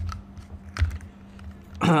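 A few light clicks and taps, the sharpest a little under a second in, over a steady low hum.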